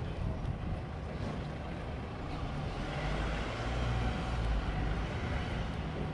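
City street traffic: a passing motor vehicle's engine rumble and tyre noise swell from about halfway through and ease near the end, over a steady background of urban noise.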